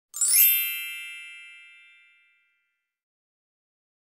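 A bright chime sound effect: a quick upward shimmer that settles into a ringing chord of high tones, fading away over about two seconds.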